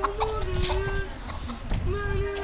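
Chickens clucking, over a long held tone that wavers slightly in pitch.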